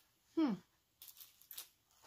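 A woman's short, falling "hmm", then a few faint, brief rustles of a stamped paper sheet being handled about a second in.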